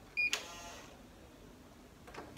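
Electronic hotel keycard door lock accepting the card: one short high beep, followed at once by a sharp click with a brief rattle as the lock releases.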